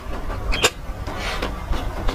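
Close-miked chewing of a burger, with wet mouth sounds and two sharp crunches about a third of the way in, over a steady low hum.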